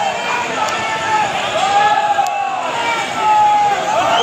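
Large crowd's voices shouting and calling over one another, loud and continuous.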